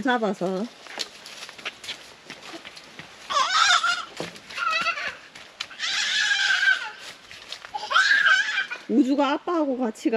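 A toddler's high-pitched squeals and shouts in four short bursts, with faint footsteps on a leaf-strewn dirt path before them.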